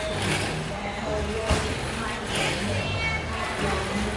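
Indistinct background talking, several voices at a distance, with a single sharp knock about a second and a half in.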